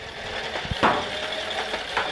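Motorized Nerf shoulder-mounted blaster switched on and running, with one sharp clack just under a second in as the trigger is pulled to fire it, followed by a faint, slowly falling whine.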